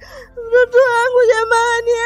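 A mournful sung vocal in the soundtrack music: one voice holding long, slightly wavering notes, coming in about half a second in.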